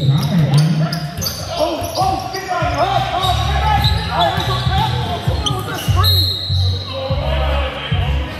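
Sounds of a basketball game in a large gym: the ball bouncing on the court floor and players and onlookers calling out, echoing in the hall.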